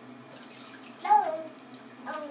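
A toddler's short, high-pitched vocal sound about a second in, falling in pitch, over faint sloshing of bathwater.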